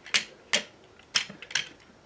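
Hard plastic clicks and knocks as the joints and parts of a Transformers action figure are moved by hand: about five sharp clicks, unevenly spaced.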